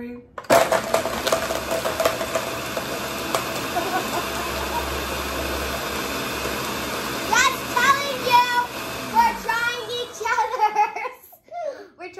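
Countertop blender switched on, blending a milkshake of ice cream, Oreos, cereal and sour cream. It starts abruptly about half a second in, runs steadily with a constant whine, and stops near the end.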